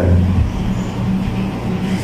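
A motor vehicle engine running with a steady low drone, strongest in the first half-second.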